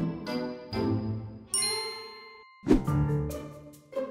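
Light background music of short plucked notes, then about one and a half seconds in a bright bell-like ding that rings for about a second and cuts off suddenly, the cue for a sudden idea. The music starts again just after.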